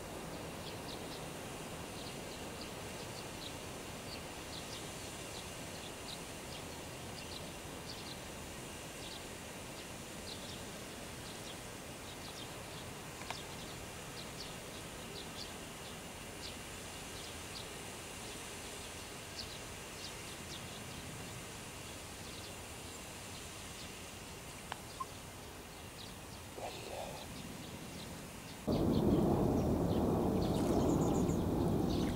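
Outdoor pond ambience: a steady low hiss with faint, short high chirps repeating about once or twice a second. Near the end a much louder low rushing noise starts suddenly and continues.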